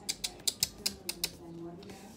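Tarot cards being handled and laid on a table: a quick run of small, irregular clicks, about eight in the first second and a half. A faint hummed voice follows near the end.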